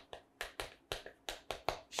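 Chalk tapping against a chalkboard while writing: a quick run of light, irregular taps.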